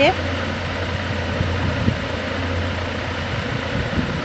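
A steady low hum over a constant background noise, unchanging for the whole stretch.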